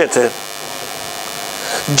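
Steady electrical buzzing hum, typical of a microphone and sound-system line, left audible in a pause between a man's speech; his voice trails off just after the start and resumes at the end.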